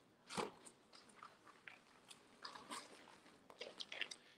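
Faint crinkling and rustling of paper envelopes being handled, in a few scattered short crackles.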